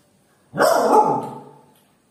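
A small dog barking once, a single drawn-out bark that trails off, to demand food.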